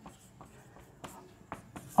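Marker pen writing on a whiteboard: a series of short, quiet scratching strokes with small gaps between them.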